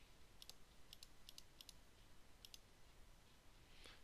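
About a dozen faint, sharp computer mouse clicks over the first three seconds, some coming in quick pairs, against near-silent room tone.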